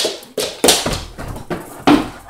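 Great Dane moving about on a couch: a few short thumps and rustles, the loudest a little under a second in.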